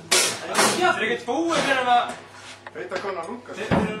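Speech only: a person's voice talking, loudest in the first two seconds and fading after, with a single sharp knock near the end.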